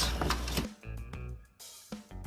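Squash cubes shuffling and scraping in a metal baking pan. About two-thirds of a second in, an upbeat background music track with a drum beat starts.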